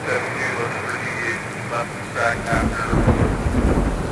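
Steady rain with a deep rolling thunder rumble that swells up from about halfway through.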